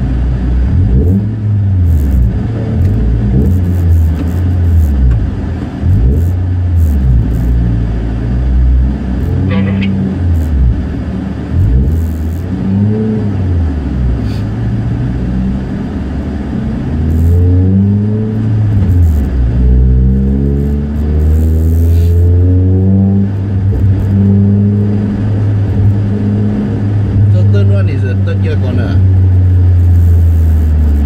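Toyota Vios race car's engine heard from inside the cabin. It revs up and down, then rises through several quick pulls about two-thirds of the way in and settles into a steadier run as the car moves off.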